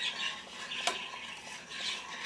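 A spoon stirring payesh (milky rice pudding) in a stainless steel saucepan, scraping around the pot, with one sharp clink of spoon on metal a little under a second in.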